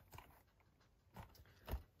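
Near silence, broken by three faint taps and rustles of a cardboard case being handled, the loudest near the end.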